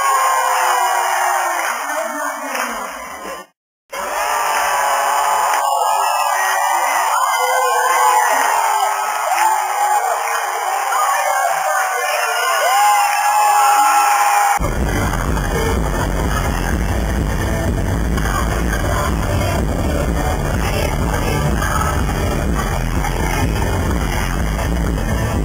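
Concert crowd screaming and whooping with no band playing, broken by a brief dropout about four seconds in. About fourteen seconds in, loud live electronic pop music with heavy bass starts suddenly.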